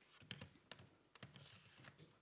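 Near silence broken by several faint, scattered clicks and taps, spaced unevenly.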